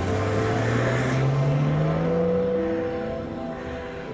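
A car engine revving up as the car pulls away, its pitch rising steadily over about two seconds, with a rush of noise in the first second. Background music plays throughout.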